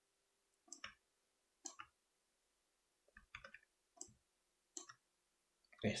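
Computer mouse clicking: about six short, separate clicks at uneven intervals, two of them close together a little after three seconds in, with dead silence between them.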